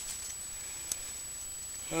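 Quiet steady background hiss with one faint click about a second in.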